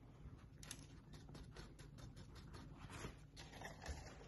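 Faint paper towel crinkling and ticking in a quick irregular run as it is shaken and tapped over a plastic cup to knock the last bits of lichen and bark in.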